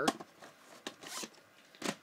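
A VHS cassette and its cardboard sleeve being handled: a few sharp plastic clicks and a short scraping rustle about a second in.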